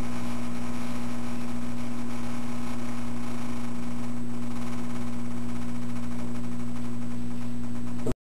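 Steady electrical mains hum with a low buzz and a layer of hiss, unchanging throughout, of the kind picked up on a surveillance camera's audio line.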